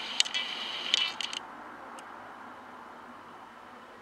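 A quick run of light clinking and rattling clicks for about the first second and a half, then only faint room hiss.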